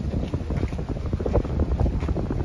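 Wind buffeting the microphone: a loud, irregular low rumble that gusts up and down.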